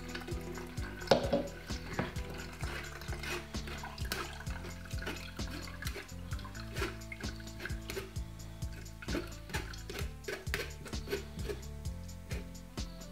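Carrot juice trickling through a metal mesh strainer into a plastic jug while a spoon works the pulp against the mesh, with short scraping clicks, over background music.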